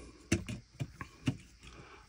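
A handful of light clicks and taps as a replacement copper heatsink-and-fan assembly is set down and shifted into place in the open chassis of a Dell Latitude 7320 laptop.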